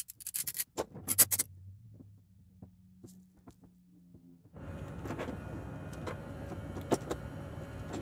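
One-handed bar clamps being ratcheted tight on an epoxy glue-up: a quick run of sharp clicks in the first second or so. A faint low hum follows, and from about halfway a steady wash of noise takes over.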